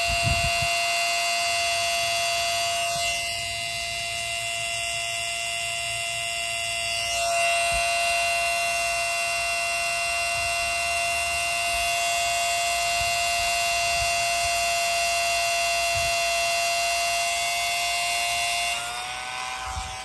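Vevor 1/10 HP 115 V water transfer pump running with a steady electric whine under load, with water from the hose spraying onto grass. Near the end the whine steps up slightly in pitch and gets quieter.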